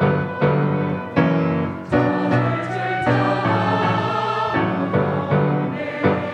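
Church choir singing a Korean hymn in parts, with piano accompaniment. The chords change about every half second to second.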